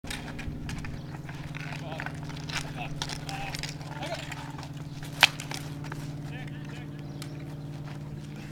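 Ball hockey play on asphalt: sticks clacking against the ball and the pavement, with one sharp crack about five seconds in, the loudest sound, like a shot. Distant players call out over a steady low hum.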